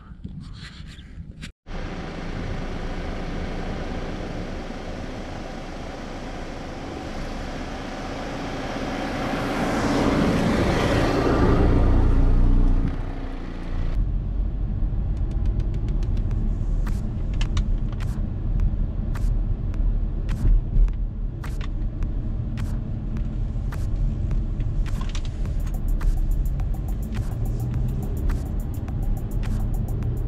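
Audi A5 quattro driving: engine and road noise swell to their loudest around ten to twelve seconds in, then drop away. After that, heard inside the cabin, comes a steady low road rumble with frequent light knocks.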